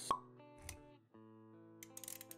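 Intro jingle music for an animated logo, with a sharp plop sound effect just after the start and a low thud a little over half a second in. The plucked-string music drops out briefly and comes back at about one second.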